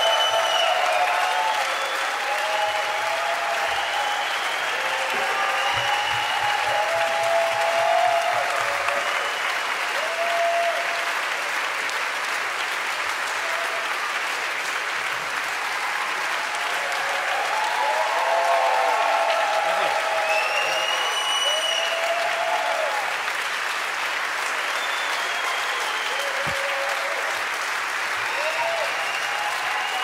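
Concert audience applauding steadily, with cheers and whistles over the clapping.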